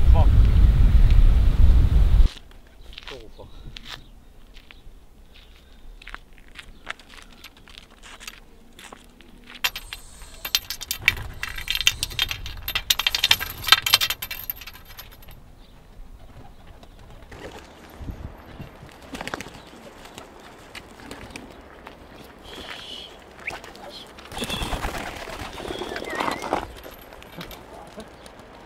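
Wind buffeting the microphone for about the first two seconds, then young Adana pigeons on the ground, with a burst of wing flapping from about ten to fifteen seconds in and another louder stretch near the end.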